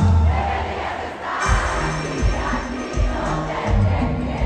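Live band music over an arena's sound system with the noise of a large crowd; the singing drops away at the start, leaving a bass drum beat about every three-quarters of a second under the crowd.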